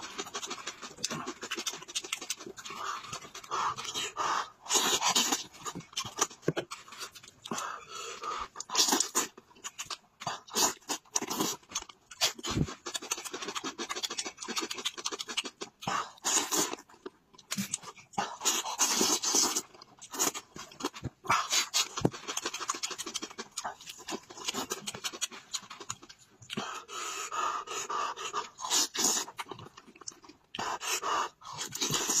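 Close-miked eating sounds of a man chewing roasted meat pulled off the bone by hand: wet chewing, lip-smacking and heavy breathing through the mouth, in irregular, closely spaced bursts.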